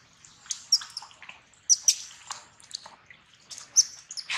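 Baby long-tailed macaque giving a series of short, high-pitched squeaks and shrieks while an adult grabs it, with light splashing in shallow water.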